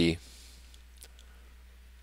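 A single faint click about a second in, over a low steady electrical hum; the tail of a spoken word is heard at the very start.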